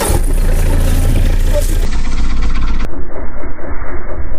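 A loud, close engine running: a deep steady rumble that turns into a fast, regular throbbing about three seconds in.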